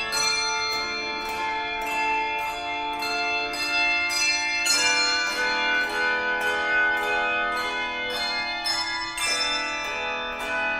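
A handbell choir ringing a piece in chords. The bells are struck in a steady pulse of about two strokes a second, each ringing on and overlapping the next, and lower bells join about halfway through.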